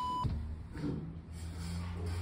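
A steady electronic beep tone that cuts off about a quarter of a second in, followed by a low steady hum.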